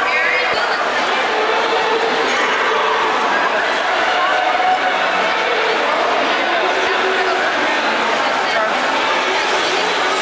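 Indistinct chatter of many overlapping voices at a steady level, with no single speaker standing out.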